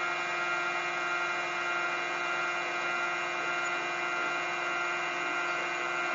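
Bedini-type pulse motor with 15 run coils and ten TIP31 transistor drivers running at high speed: a steady whine made of many pitches at once, holding even throughout.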